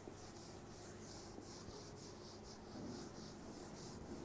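A whiteboard eraser rubbing marker ink off a whiteboard: faint, quick back-and-forth wiping strokes, about three a second.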